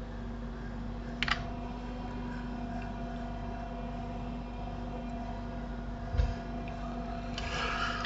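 Steady low electrical hum and room noise picked up by the microphone, with a single sharp click about a second in and a short dull bump around six seconds in.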